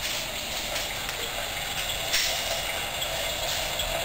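Battery-powered baby cradle swing running, a steady mechanical whirr and hiss with a faint uneven rhythm, and a brief louder rustle a little over two seconds in.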